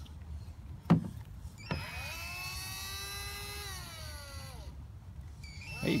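Toy power drill's small electric motor whirring for about three seconds, spinning up, holding steady, then falling in pitch as it winds down, after a sharp click about a second in. The whir starts again just before the end.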